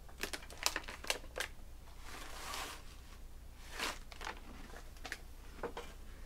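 Scattered light clicks and crinkles of trading cards and foil card-pack wrappers being handled off to the side, with a longer rustle about two seconds in and another near four seconds.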